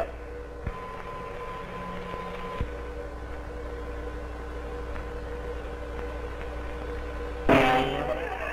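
Steady hum and hiss of an early film soundtrack with faint held tones. There is a click under a second in and another a couple of seconds later, where the highest tone stops. A louder pitched sound starts near the end.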